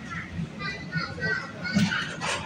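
Indistinct background voices in a supermarket, some sounding like children's, over a steady low store hum.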